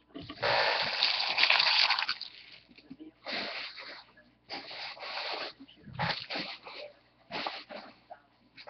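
Foil trading-card pack wrappers crinkling as they are swept off a table and gathered up: one long rustle in the first couple of seconds, then several shorter bursts of crinkling.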